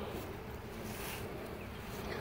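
A colony of honey bees buzzing steadily from an open hive, the bees crowding over the exposed frames.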